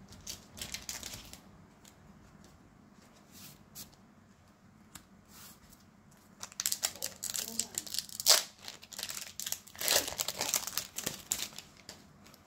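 Pokémon booster pack's foil wrapper crinkling and being torn open, in a run of rustling bursts through the second half. Before that come a few light clicks of cards being handled.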